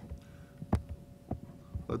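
Three short, sharp computer mouse clicks about half a second apart while text is selected on screen, over a faint steady hum.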